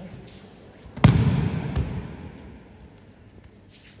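A judoka thrown with kouchi gari hits the tatami about a second in: one loud thud of the body landing on the mat, dying away over the next second, with a smaller knock shortly after.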